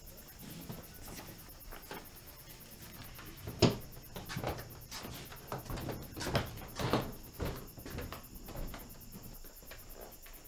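A run of knocks and clatter from something wooden being handled, such as a door or cupboard. One sharp knock comes a few seconds in, followed by a string of softer knocks and rattles over the next four seconds.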